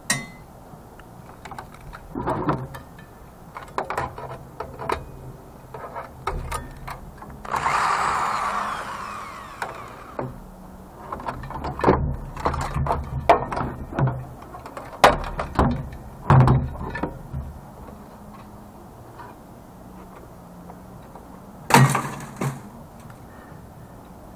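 Knocks, clicks and rattles of a CRT monitor's metal and plastic parts being handled and pulled apart by hand. About a third of the way in, a corded electric drill runs for about two seconds and winds down.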